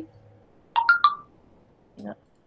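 A short electronic notification chime: three quick beeps at different pitches, about three-quarters of a second in.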